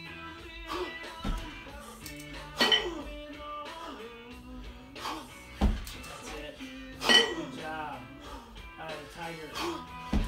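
Background music, with several sharp metallic clinks and thuds from a pair of 20 kg kettlebells knocking together as they are jerked overhead and dropped back to the rack position on the chest.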